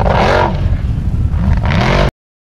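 Off-road racing buggy's engine revving hard, its pitch surging up and falling back several times as the wheels spin on rough ground.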